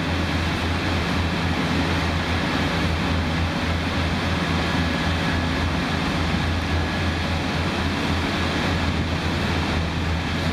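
A steady low rumble with a hiss over it, unchanging throughout: the background noise of foundry machinery while molten gold is cast into ingot moulds.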